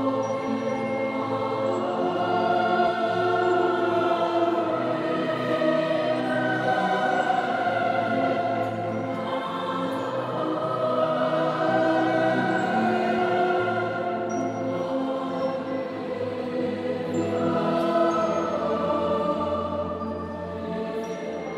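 Choir singing with a symphony orchestra, performed live: slow, long-held chords in phrases that swell and ease every few seconds.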